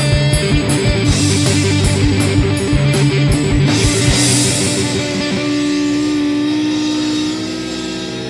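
Instrumental rock passage: electric guitar and bass over a fast, steady beat. About five seconds in the beat stops and a held chord rings on, a little quieter.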